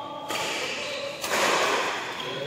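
Badminton rackets hitting the shuttlecock in a fast doubles rally: two sharp hits, about a third of a second in and just past a second in, each ringing out in a large hall.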